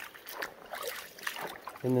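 Faint, sparse clicks and knocks over a light, lapping water sound.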